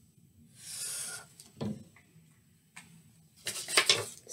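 A black marker drawing one long scratchy stroke across paper, then a light knock on the table. Near the end comes a quick run of crackles as the paper sheet is picked up and handled.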